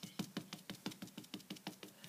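A piece of stamping foam loaded with gilding glue being dabbed onto a clear polymer stamp on an acrylic block: a steady run of little taps, about six or seven a second, inking the stamp with glue.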